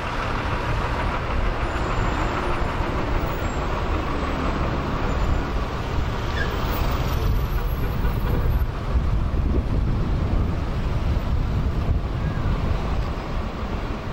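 Slow road traffic passing close by: the engines and tyres of a bus and cars driving over an unpaved, broken road surface make a steady noise, heaviest in the low end.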